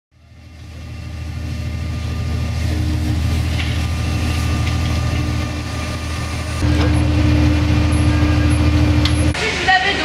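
A steady low engine rumble with a held hum above it. It fades in at the start, grows louder about two-thirds of the way through and cuts off abruptly near the end.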